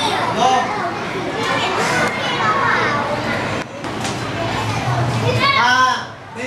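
A classroom full of schoolchildren talking over one another in a steady hubbub, with one voice standing out loudly near the end.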